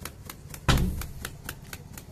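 Rapid, even clicking, about six clicks a second, with one loud thump a little after half a second in.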